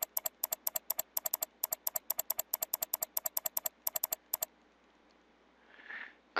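A computer mouse button clicked rapidly over and over, about eight clicks a second, stopping about four and a half seconds in.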